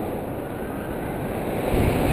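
Wind rushing and buffeting over the camera's microphone as a tandem paraglider flies, growing louder near the end.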